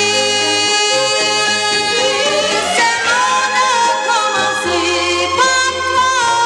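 1960s French pop ballad record playing: a voice holds long, wavering notes over an orchestral backing with a steady bass line, the melody gliding upward about three seconds in.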